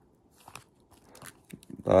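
A few faint clicks and crinkles of plastic card holders being handled as one baseball card is put away and the next picked up, ending in a spoken "uh".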